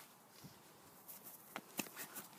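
A few faint footsteps of someone hurrying across, the two sharpest near the end, over a quiet hiss.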